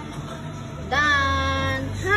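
A high-pitched, drawn-out vocal call about a second long, starting about a second in, held at a steady pitch after a short rise.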